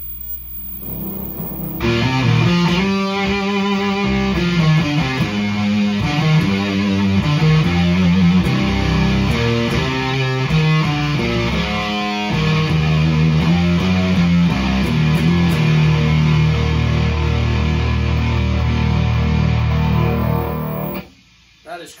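Electric guitar played through an Onkel Amplification Death's Head fuzz pedal (germanium transistors and a 12AU7 preamp tube) with volume, tone, gain and fuzz all maxed. A faint hum for the first couple of seconds, then a loud, distorted fuzz riff that ends on a long held low chord, choked off suddenly about a second before the end.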